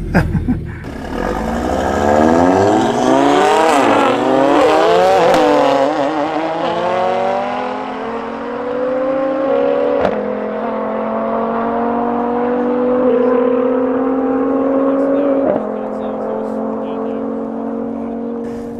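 A big-turbo Audi RS3 five-cylinder and a Nissan GT-R accelerating flat out side by side in a rolling half-mile race. Their engine notes climb and drop back at each gear change over the first few seconds, then settle into a long, slowly rising pull at high speed.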